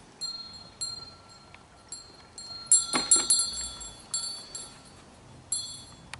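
Small brass hand bell ringing unevenly as a dog carries it in its mouth: about a dozen jangling strikes, each leaving a short ring, coming quickest and loudest about three seconds in.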